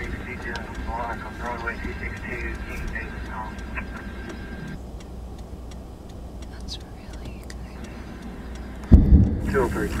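Steady low rumble inside a vehicle, with indistinct voices over the first few seconds and one loud thump about nine seconds in.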